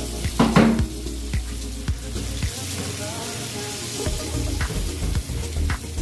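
Ground beef sizzling steadily in a frying pan over a gas burner, with a spatula stirring it and clicking against the pan. A brief louder sound comes about half a second in.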